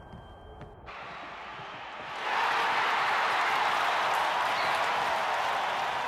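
Steady stadium crowd noise that swells in about two seconds in, after a quiet start.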